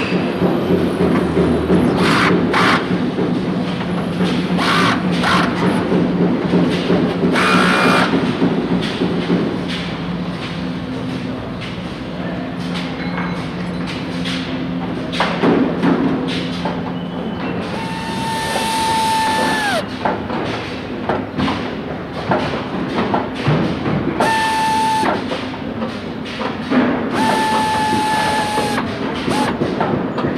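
Car-factory assembly line: mechanical nut-tightening tools running over a steady machine hum, with scattered clanks and knocks. In the second half the tool runs three times, each a steady whine with hiss lasting one to two seconds that drops in pitch as it winds down.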